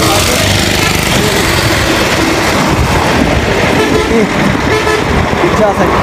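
Road traffic heard from a moving bicycle, with wind rushing over the microphone. A bus passes close by at the start, and a vehicle horn toots about halfway through.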